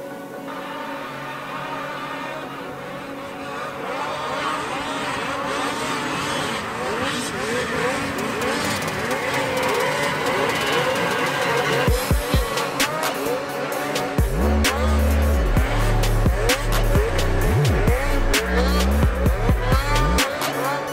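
Racing snowmobile engines revving up and down in quick pitch swings as the sleds take the jumps, mixed with background music that builds and breaks into a heavy beat with deep bass about twelve seconds in.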